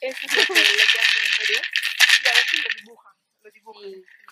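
Gourd rattle (maraca) shaken rapidly in a steady rustling shake, stopping abruptly about three seconds in.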